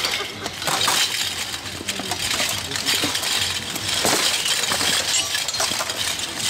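Steel plate armour, swords, a mace and shields clanking and clashing in a full-contact armoured melee (behourd): a run of sharp metal strikes and rattles throughout.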